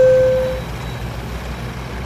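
The lower note of a two-note falling tone, held and fading out about half a second in, leaving a steady low hum.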